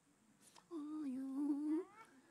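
A person's voice humming one held note into a microphone for about a second, its pitch nearly level with a slight waver.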